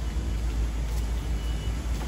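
Car engine idling nearby: a steady low rumble.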